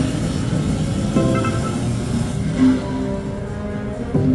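Neptune Power Link video slot machine playing its game music and spin sounds while the reels spin, with a sharp sound about a second in.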